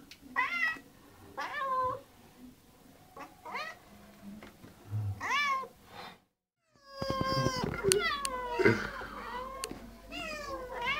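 Two domestic cats meowing over and over, begging for food, each call rising and falling. After a short break about six seconds in, the meows come thicker and overlap, with a few sharp clicks.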